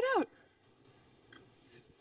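Near silence: room tone with a few faint, brief clicks, after a single spoken word at the start.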